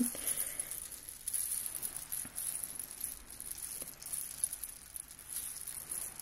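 A bead-covered ball handled and shaken close to the microphone, giving a soft, steady high jingling rattle of many small beads with scattered little clicks.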